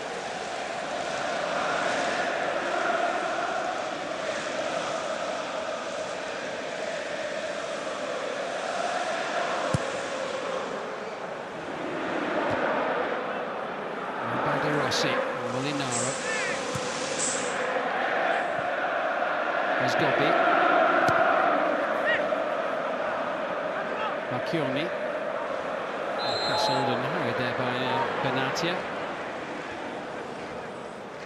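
Stadium crowd of football fans chanting and singing, the massed voices swelling and fading in long waves. A couple of short, high whistles sound about halfway through and again near the end.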